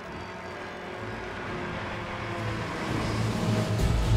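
Large mobile boat hoist (travel lift) running as it carries a ship out of the water, a machinery rumble growing steadily louder, with a deep boom near the end.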